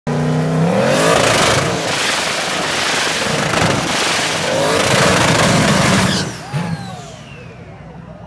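Turbocharged drag-race car engine revving hard and running loud, its pitch climbing at the start and again around four seconds in. After about six seconds it drops away, leaving quieter wavering tones.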